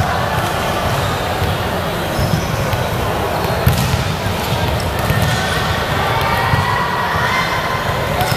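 A ball bouncing a few times on a wooden sports-hall floor, irregular thuds over the steady low hum and murmur of voices in a large hall.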